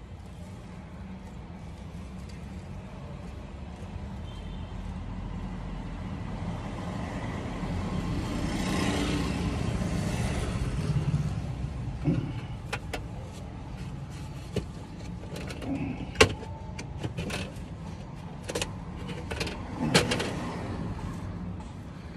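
Steady low hum inside a car cabin, with a vehicle passing outside that swells up and fades away over several seconds. Then scattered knocks and rustling as things are handled inside the car, with two sharper knocks in the second half.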